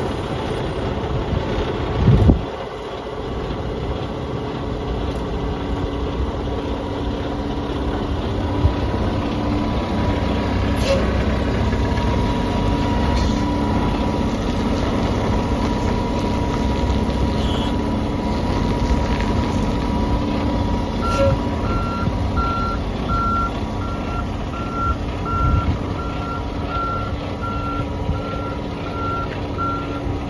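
Kenworth semi tractor's diesel engine idling steadily just after start-up, with a brief loud burst about two seconds in. From about two-thirds of the way through, a truck backup alarm beeps steadily at about one and a half beeps a second.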